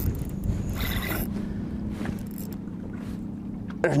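Steady low rumble of wind and water around a bass boat on choppy open water, with a faint steady hum underneath.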